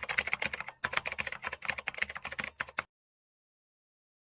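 Typing sound effect: a fast run of keyboard clicks that stops suddenly about three seconds in.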